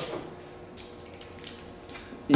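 A few faint light clicks of the small broken steel magnet pieces being handled on a table, over a low steady room hum.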